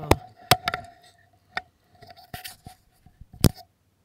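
Handling noise at an open generator compartment: a string of sharp clicks and knocks with a short scrape partway through and one loud knock near the end. The generator itself is not running.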